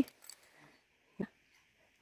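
Mostly quiet trail ambience with a faint steady high hiss, broken by one short spoken "yeah" about a second in.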